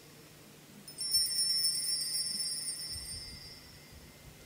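Altar bells (a cluster of small sanctus bells) rung once about a second in, ringing out and fading away over about two seconds: the bell that marks the priest's genuflection after the elevation of the chalice at the consecration.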